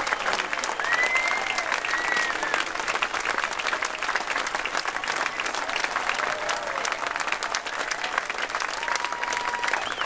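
Large concert audience clapping steadily, with a long high whistle about a second in.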